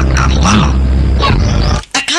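Movie soundtrack effects: a loud, deep rumble with growl-like vocal sounds over it, cutting off abruptly near the end.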